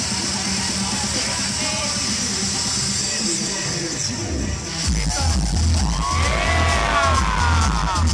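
Outdoor crowd noise with scattered voices and yells, then loud electronic dance music over a stage PA, its heavy pulsing bass beat coming in about five seconds in.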